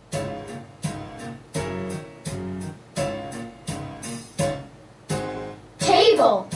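Acoustic guitar strumming chords, one strum about every 0.7 seconds: the opening of a children's sing-along song.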